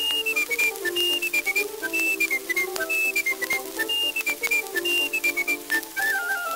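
Early phonograph recording of an instrumental tune: a high, whistle-like melody stepping down in short phrases about once a second over a lower chordal accompaniment, with frequent clicks of surface noise.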